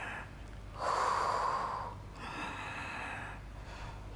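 A woman's breathing, close on a clip-on microphone, as she holds a side plank. There are two long breaths: a louder one about a second in, then a softer one.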